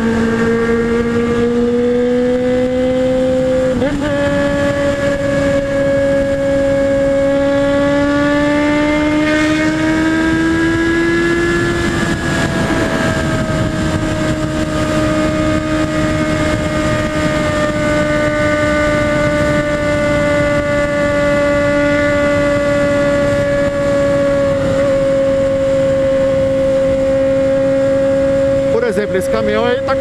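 Honda Hornet's inline-four engine at highway speed, heard with wind rush. Its note rises steadily for about the first twelve seconds as the bike accelerates, with a short break about four seconds in, then holds steady and eases off slightly.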